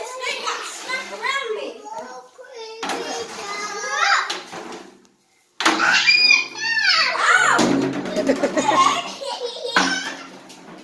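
Young children's excited, high-pitched voices calling out and squealing at play, with no clear words. The sound cuts out completely for about half a second around five seconds in.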